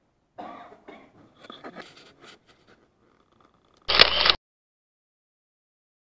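Light scrapes, knocks and handling noise from a hand-held camcorder for the first few seconds, then about four seconds in a short, loud burst of noise with two sharp clicks, cutting off suddenly.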